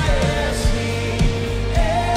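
Worship band song: a male lead voice holding and bending long sung notes over strummed acoustic guitar and a steady kick-drum beat about twice a second.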